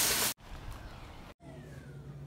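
Greens sizzling loudly in a hot frying pan as they are tossed, cut off abruptly about a third of a second in. Then a faint low hum.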